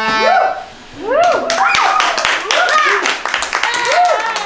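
Children clapping and cheering with high rising-and-falling whoops, beginning about a second in, after a tune ends.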